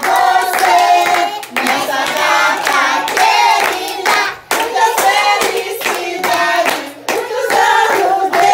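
A family of adults and children singing a birthday song together while clapping along in time.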